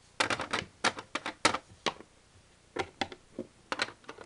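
Hard plastic toy figures tapped against a hard floor as they are hopped along by hand: irregular sharp clicks, often two to four in quick succession, with short gaps between the groups.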